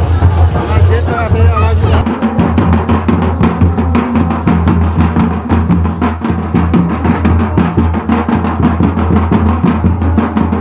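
Crowd babble and voices, then about two seconds in a sudden switch to Santali dance drums playing a fast, steady rhythm.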